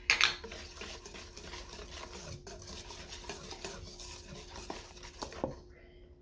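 A wire whisk stirring batter in a stainless steel mixing bowl, the wires scraping and ticking against the metal as the cornstarch is mixed in. A sharp clink at the start; the stirring stops about five and a half seconds in.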